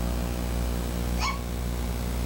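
Steady low electrical hum with a buzz of overtones, as from a sound system, with one brief high squeak about a second in.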